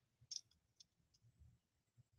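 Near silence, with a few faint clicks and light handling noise from a small glued paper-and-lace piece being pressed together by hand, the clearest about a third of a second in.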